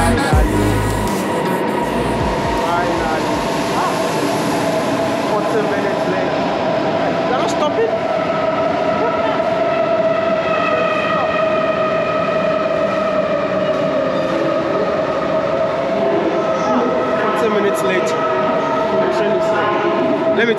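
Electric S-Bahn commuter train pulling into an underground station: continuous rumble with a steady whine, joined by higher whining tones from about 8 to 17 seconds in as it comes to a stop.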